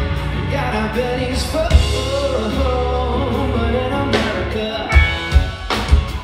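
Live rock band playing: a man singing over acoustic-electric and electric guitars and a drum kit, with sharp drum hits standing out in the second half.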